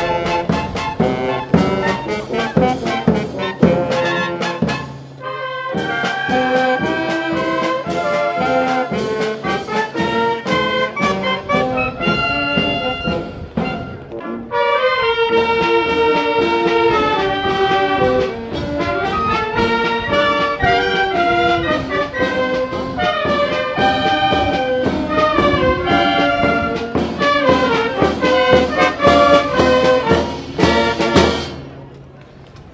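Town wind band of saxophones, clarinets, low brass and bass drum playing a tune over a steady drum beat. The music breaks off briefly about five seconds in and again about halfway through, then carries on.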